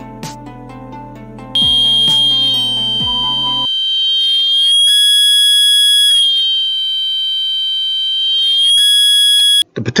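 Piezo buzzer sounding a steady shrill tone, its loudness rising and falling twice as a potentiometer wired as its volume control is turned. It cuts off suddenly just before the end. Background music plays under it for the first few seconds.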